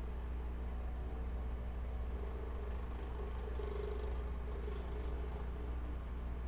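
Steady low hum of background noise picked up by an open microphone, with no distinct events.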